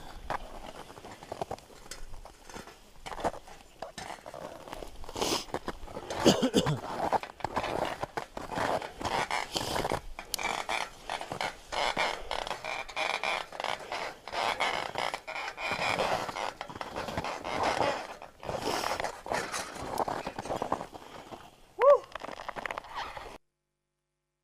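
Crampons scraping and clicking irregularly on aluminium ladder rungs and ice during a crevasse crossing, with a cough about seven seconds in. The sound cuts off near the end.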